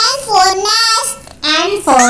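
A child's high voice chanting in a sing-song, two phrases with a short break about a second in.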